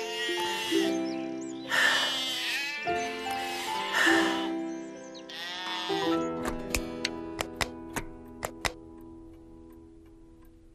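Sheep bleating twice over soft background music with long held notes; in the second half the music fades under a run of light ticks.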